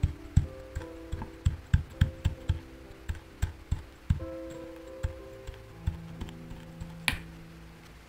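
A glass beaker's base tamping an Oreo crumb layer into a steel mousse ring, a quick run of about a dozen dull thumps over the first four seconds, then one sharper click about seven seconds in. Soft background music plays underneath.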